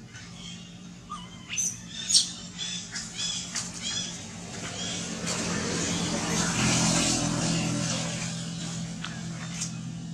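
A run of short high-pitched squeaks, about three a second, from a baby macaque in the first half. Then the rush of a vehicle passing on a road, swelling and fading, over a steady low hum.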